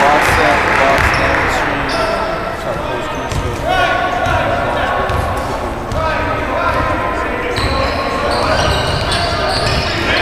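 Basketball being dribbled on a hardwood gym floor during play, repeated thuds of the ball, with voices calling out in the large gym.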